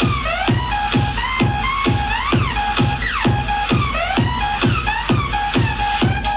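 Dance music backing a crew's stage routine, played over the venue sound system: a heavy, steady beat about twice a second with sliding high tones over it.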